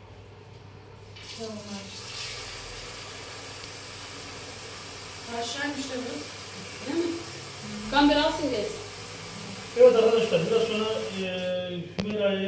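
Water running from a kitchen tap into a sink while something is washed under it. The flow comes on about a second in, runs steadily, and is shut off shortly before the end.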